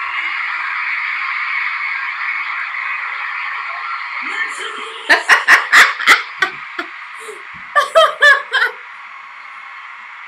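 A woman laughing in two runs of quick giggles, the first about five seconds in and the second near the end. Under the first part, a concert crowd's steady high screaming plays back from the video and fades out by about four seconds in.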